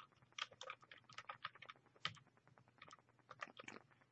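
Faint typing on a computer keyboard: a quick, irregular run of key clicks as a password is entered.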